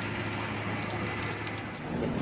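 Steady rushing noise of a large fire burning through market kiosks, with scattered small crackles over a steady low hum.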